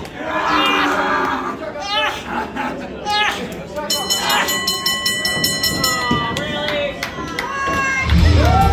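Crowd shouting in a large hall. About halfway through, a wrestling ring bell is rung rapidly for about two seconds, signalling the end of the match.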